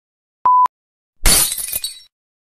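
A short, steady electronic beep about half a second in, the last of a countdown series, then a loud glass-shattering sound effect a little past a second in that crashes and dies away.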